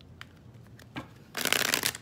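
A deck of tarot cards being shuffled by hand. A few light card clicks come first, then a brief riffle of cards flicking together for about half a second near the end.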